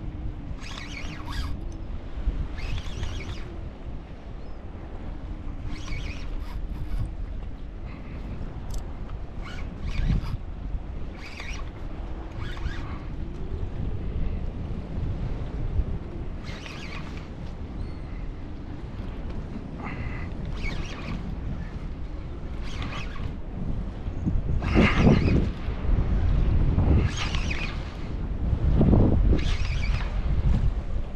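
Wind buffeting the microphone over lapping water, with stronger gusts from about two-thirds of the way in. Scattered short clicks and knocks come from the rod and reel while a hooked bluefish is fought in.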